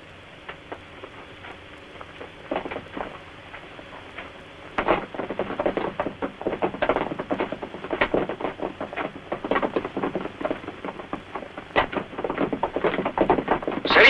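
A dense, irregular clatter of knocks and thuds, sparse at first and growing busier and louder from about five seconds in.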